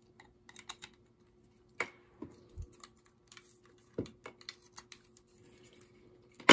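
Faint, scattered clicks and taps of small plastic USB plugs and a short cable being handled and pushed together on a wooden desk, with a few sharper clicks about two and four seconds in.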